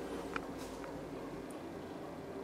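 Steady low room hum, with a light click about a third of a second in and a fainter one near the middle.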